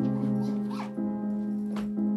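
Soft piano music with held chords that change about once a second. Over it, a suitcase zipper is pulled open in two short rasps, the second near the end.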